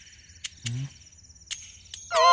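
Faint night-time insect chirring, a steady high trill with a few sharp clicks, and one short low croak-like sound just under a second in.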